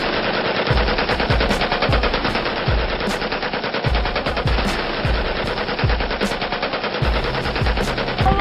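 Sustained automatic gunfire: a dense, rapid rattle of shots, with deep thuds recurring underneath it.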